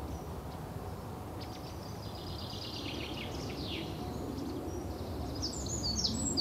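Quiet room tone: a steady low hum, with faint high chirping between about one and a half and four seconds in, and again near the end.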